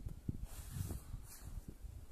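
Low, steady rumble of a car driving, heard from inside the cabin, with a few faint knocks.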